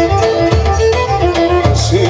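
Live Pontic folk music in an instrumental passage: the Pontic lyra (kemenche) bows the melody over sustained keyboard bass notes and the steady beat of the daouli drum.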